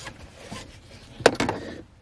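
A single sharp click a little over a second in, over faint rustling of movement in a quiet car interior.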